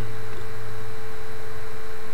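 A steady, loud electrical hum with background hiss, mains hum on the recording microphone.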